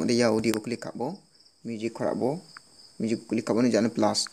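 A man speaking in short phrases with pauses, over a steady high-pitched insect trill.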